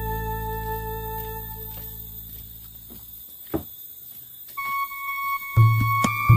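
Background music: a held keyboard chord fades out over about three seconds, then, after a short quiet gap with a single click, a new tune with a beat starts in the last second and a half.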